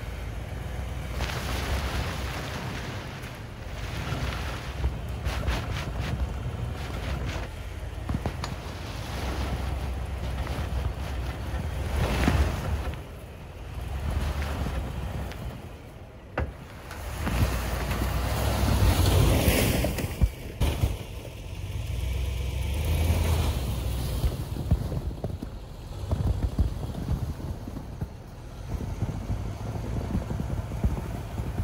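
Lexus GX470's 4.7-litre V8 engine pulling the stuck SUV through deep snow, the throttle coming on and off in surges of a few seconds, with its tyres working in the snow. Wind gusts on the microphone.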